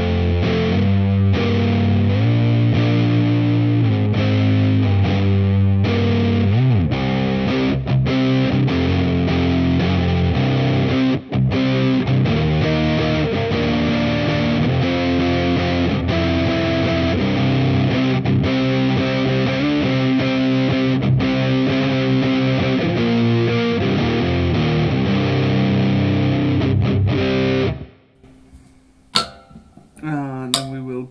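PRS SE 24 electric guitar played through a Line 6 Helix high-gain amp patch, DI'd: distorted riffing of palm-muted chords and single notes. The playing stops abruptly about two seconds before the end, followed by a few sharp clicks.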